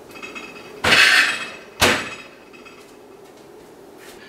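Kitchen handling sounds as the hot corn is moved from the microwave to the table: a short clatter about a second in, then a single sharp knock about a second later.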